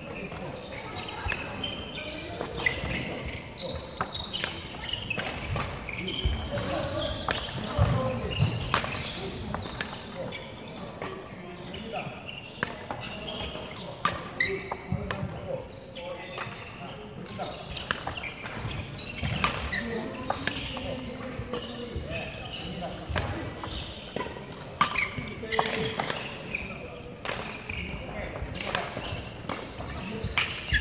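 Badminton rackets striking a shuttlecock in a rally drill, sharp hits about once every second or so. Footsteps and shoe squeaks on a wooden court floor come between the hits, echoing in a large hall.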